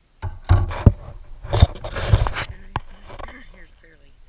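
Irregular thumps, knocks and scrapes of wooden beehive frames and a metal hive tool being handled during hive work, with a short sharp click near the end.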